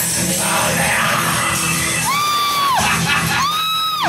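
A man singing loudly into a microphone over rock backing music, holding two long, high, shouted notes in the second half, each ending in a falling slide.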